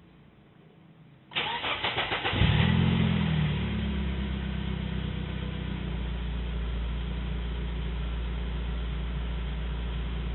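BMW E36's M43 four-cylinder engine starting: the starter cranks for about a second, the engine catches, flares up in revs and then settles to a steady idle.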